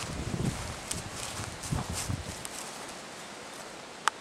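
Footsteps on gravel and dry leaves: a few soft steps in the first two seconds or so, then quieter.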